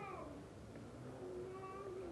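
A faint, high-pitched, drawn-out call: a pitched sound slides down just at the start, then one held, steady note runs through the second half.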